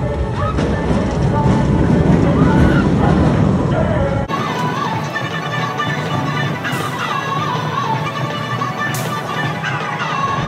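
Amusement-park sound dominated by a steel roller coaster passing overhead, with a heavy rumble, voices and music. About four seconds in, a cut brings a lighter mix of voices and music without the rumble.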